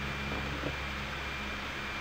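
Steady low hiss with a faint hum underneath: background room tone of a desk microphone between spoken lines.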